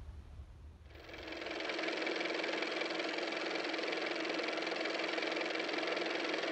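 Engine of an old-fashioned car running steadily, fading in about a second in and then holding an even level.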